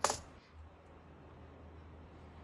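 A brief hard plastic clatter from a slim white wireless keyboard being handled on a tabletop, right at the start, followed by quiet room tone.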